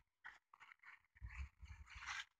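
Near silence with faint scattered rustles and light taps, and a soft low rumble in the second half.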